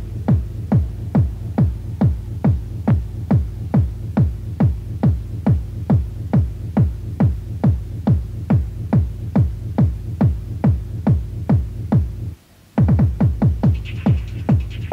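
Electronic dance music with a pounding four-on-the-floor kick drum, a little over two beats a second, each kick dropping in pitch, over a steady deep bass drone. The beat cuts out for about half a second near the end, then comes back with lighter ticking added between the kicks.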